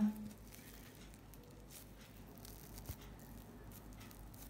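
Faint, soft tearing and rustling as a fried cornmeal flatbread is pulled apart by hand through its soft crumb, with a small tick about three seconds in.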